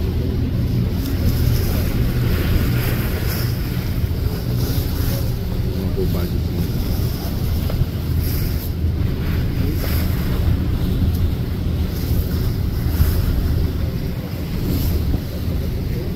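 A large catamaran ferry's engines running with a steady low drone, while wind gusts buffet the microphone.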